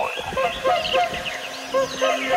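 Many birds calling in short chirps and honk-like notes, with a low steady tone coming in a little past the middle.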